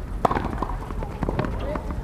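Tennis ball struck by rackets during a doubles rally on a hard court: one sharp pop about a quarter-second in, with lighter knocks of bounces and strikes around it.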